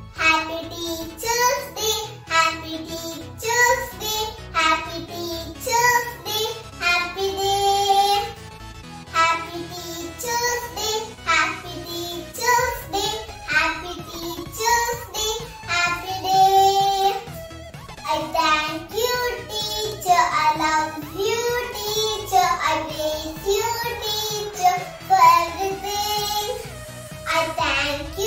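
A young girl singing a song in continuous phrases, holding some notes for about a second.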